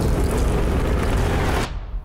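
Movie sound effects of a giant sandworm rushing through sand: a loud, dense, steady rumble with rushing noise that cuts off abruptly shortly before the end.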